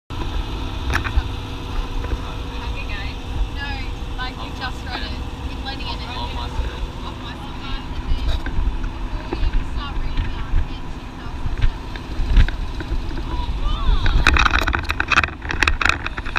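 Engine and road rumble of an open-sided passenger truck, heard from the benches in its open back, with wind noise.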